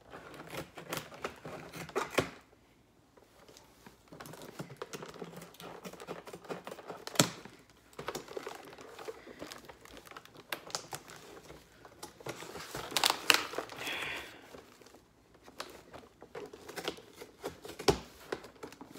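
Scissors cutting open a cardboard box: a run of irregular clicks and snips, with cardboard scraping and crinkling. A few sharper snaps stand out, about two seconds in, about seven seconds in and about thirteen seconds in.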